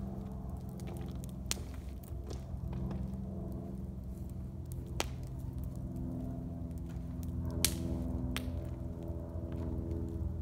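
Wood campfire crackling in a stone fire pit, with a few sharp pops, the loudest about three quarters of the way through. Under it runs a steady low hum.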